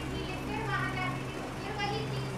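Children's voices and chatter, over a steady low hum.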